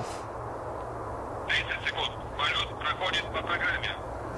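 A thin, tinny voice over a radio link, starting about a second and a half in, over a steady low hum and background noise.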